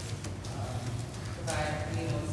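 Faint off-microphone voices murmuring in a large hall over a steady low hum, with a few light knocks or taps.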